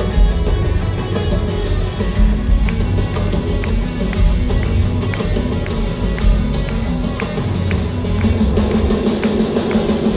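Live rock band playing an instrumental passage: electric guitars, bass and drum kit keeping a steady beat.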